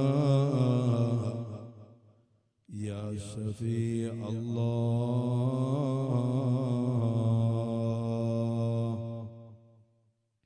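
A man chanting an Arabic devotional phrase in long, drawn-out notes with wavering ornaments. One phrase fades away about two and a half seconds in, and a second long held phrase follows and dies away just before the end.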